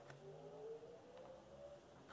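Near silence: faint room tone with a faint hum that slowly rises in pitch and fades near the end.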